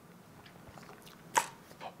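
Quiet room tone with a single short, sharp click about two-thirds of the way through, then a faint sound just before speech resumes.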